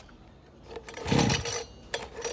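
Handling noise from a two-stroke brush cutter's engine being worked by hand: a brief scraping rustle about a second in, and a few light clicks near the end.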